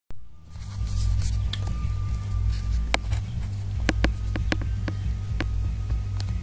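Steady low electrical hum from an electric guitar amplifier left on and idle, with a faint thin whine above it. A run of sharp clicks, about seven, comes between three and five and a half seconds in.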